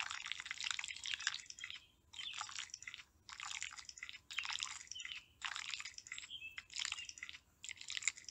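Soft mud squelching and squishing in a run of short wet bursts, about one a second, as feet work down into a warm mud pit.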